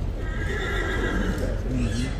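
A horse whinnying: one high, wavering call of about a second and a half that falls away at the end.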